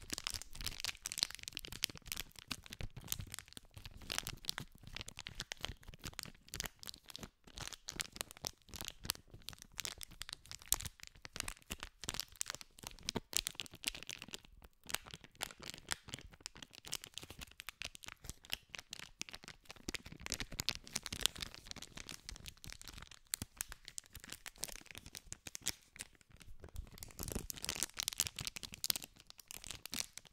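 A small printed paper packet wrapper being crinkled, rubbed and scratched by fingers very close to a microphone. It makes a dense, irregular run of sharp crackles and clicks.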